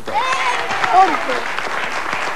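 Studio audience applauding, with children's excited voices and shouts over the clapping.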